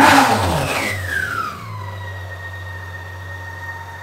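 BMW K1600 GTL's inline-six engine, warm, revved with a quick throttle blip at the start, the revs falling back within about two seconds to a steady idle. It runs evenly and correctly after the faulty cylinder-2 ignition coil and all the spark plugs were replaced, curing a misfire on that cylinder.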